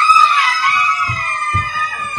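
Several people screaming in excitement, long held high-pitched screams overlapping, with a few low thumps from jumping.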